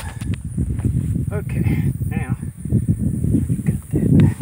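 Faint, indistinct bits of voice over a constant, rumbling low noise.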